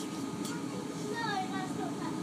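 Steady running noise inside the passenger saloon of a Class 450 Desiro electric multiple unit: a low, even rumble of the train moving along the track, with faint voices in the carriage in the second half.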